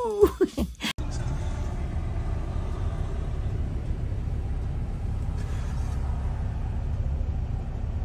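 A woman's sung "ooh" ends with a cut about a second in, followed by steady low street-traffic rumble from vehicle engines.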